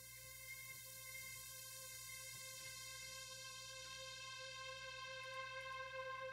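A soloed synthesizer track holding one sustained, bright note rich in overtones, slowly swelling louder, played back while it is being EQ'd.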